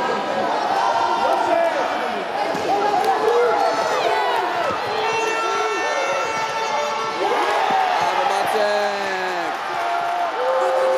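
Many high-pitched voices shouting and calling out at once in an echoing sports hall during an indoor futsal game, with occasional thuds of the ball being kicked and bouncing on the wooden floor.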